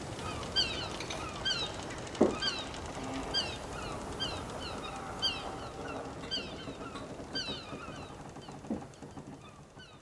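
Birds calling: many short, high, falling chirps in quick runs, with a few lower calls, fading out near the end.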